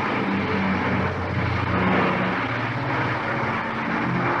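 Steady background hiss with a low drone, the noise floor of an old 1950s recording, heard in a pause between spoken sentences.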